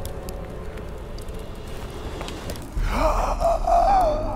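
A man's loud, voiced gasp, wavering in pitch and held for over a second, starting about three seconds in over a low rumble.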